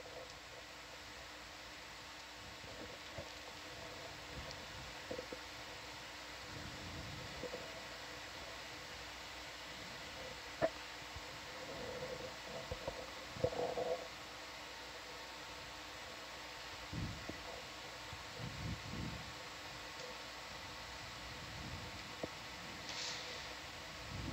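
Faint room tone: a steady hiss and low hum with a few faint constant tones, broken by a sharp click about halfway through, a few soft muffled bumps just after it, and low rumbles near the end.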